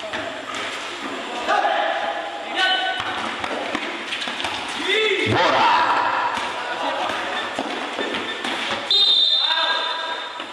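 A basketball bouncing repeatedly on a concrete court as it is dribbled in play, with short impacts throughout.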